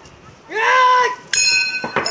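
A man's loud shout of about half a second, then a sudden metallic strike that rings on as a bright, steady clang for most of a second, with a sharp knock near the end.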